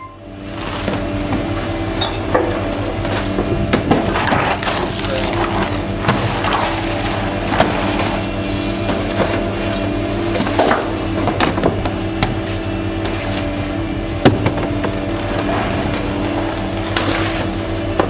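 Gasoline engine of a GMC C7500 rear-loader garbage truck running steadily, while trash bags and the contents of a can are thrown into the hopper, clattering and thudding at irregular intervals, the sharpest crash about fourteen seconds in.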